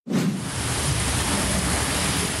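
Hurricane wind and rain noise: a steady hiss with a low, uneven rumble underneath.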